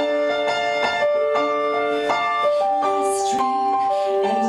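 Digital stage keyboard with a piano sound playing the intro to a slow song: sustained notes and chords, changing about every half second. A short hiss sounds about three seconds in.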